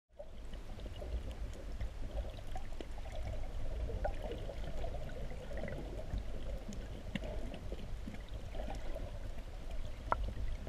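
Seawater sloshing and churning heard underwater, muffled, over a steady low rumble and scattered small clicks.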